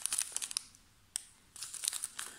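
Small clear plastic zip bag of glass beads crinkling as it is handled and turned over: a quick run of crackles at the start, a single sharp crackle about a second in, and another run near the end.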